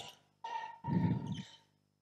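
Faint sneaker squeak on a basketball court floor, starting about half a second in and lasting about a second, from players sliding in a defensive drill.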